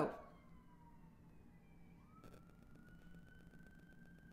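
Faint siren wailing in the distance: a tone falling away in the first second, then from about halfway a slowly rising tone that holds, over a quiet room hum.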